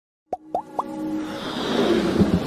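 Logo-intro sound effects: three quick pops in a row, each rising in pitch, then a swelling riser that builds in loudness.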